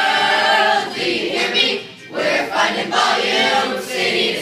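A large group of students singing together in unison, in two phrases with a short break about halfway.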